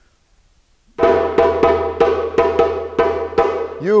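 Djembe played with the bare hands: after a second of quiet, a run of ringing strokes in a repeating long-short-short pattern, about three strokes a second. It is the djembe break, the call phrase that tells the players when to start and how fast to go.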